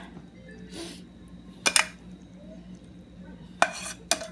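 A serving utensil and pan clinking against a ceramic plate as cooked string beans are scooped and tipped from the pan onto the plate. There are a few sharp clinks: two close together about halfway, and one more near the end.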